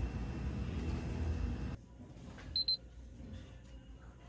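Two or three quick high-pitched alarm beeps about two and a half seconds in, over quiet room tone. Before them a steady low hum cuts off suddenly.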